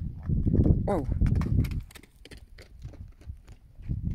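Miniature donkey's hooves knocking on hard dry dirt as it runs and plays. A loud low rumble sits under the hoofbeats for the first couple of seconds, and the hoofbeats grow quieter and sparser after that.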